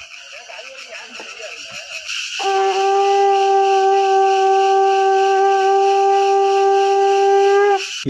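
A hand-held horn blown in one long, steady note for about five seconds. It starts about two and a half seconds in and cuts off just before the end, after faint voices.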